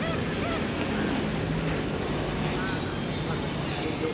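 Steady outdoor background noise with a faint murmur of distant voices and a few faint, short calls, once about half a second in and again near three seconds in.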